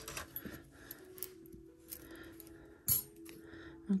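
Metal costume-jewelry bangles and bracelets clinking against each other as they are picked from a pile, with a sharper clink about three seconds in, over a faint steady hum.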